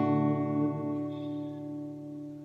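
Acoustic guitar chord struck at the start and left to ring, slowly fading away.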